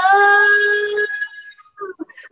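A woman singing a cappella, swooping up into one long held note on the word "love", which fades after about a second and a half.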